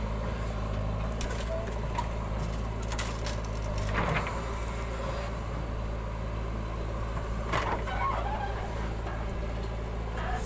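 JCB 3DX backhoe loader's diesel engine running steadily while the backhoe arm digs and dumps soil. There are a few short knocks and clunks, the loudest about four seconds in and another near seven and a half seconds.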